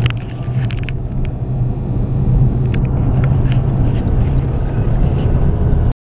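Steady low drone of a moving vehicle's engine and tyres, heard from inside the cab while driving. A few light clicks sound in the first three seconds.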